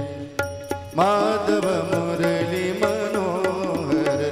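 Devotional bhajan: a singing voice with harmonium accompaniment and small hand cymbals striking a steady beat. The voice drops out briefly and comes back about a second in, while the harmonium and cymbals carry on.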